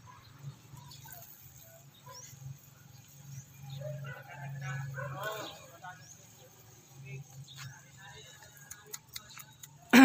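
Faint distant voices over a low steady hum, strongest about four to five seconds in, with a few light clicks.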